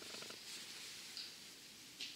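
Quiet room tone through a lapel microphone, with a brief faint creaky hum from a man's voice at the very start.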